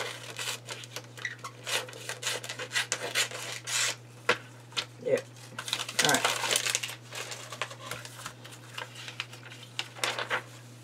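Scissors snipping through glossy magazine paper, a quick run of crisp cuts. Then the paper rustles as the cut-out is handled and a magazine page is turned. A steady low hum runs underneath.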